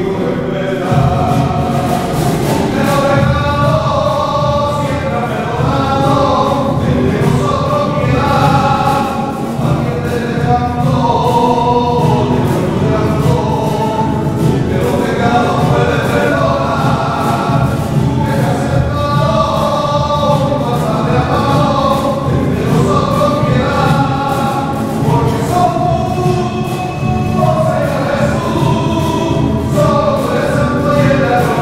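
Group of voices singing together with strummed acoustic guitars keeping a steady rhythm.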